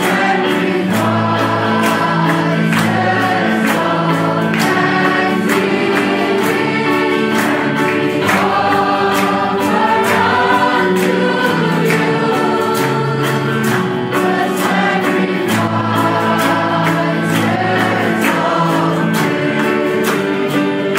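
A choir singing a Christian worship song over instrumental accompaniment with a steady beat.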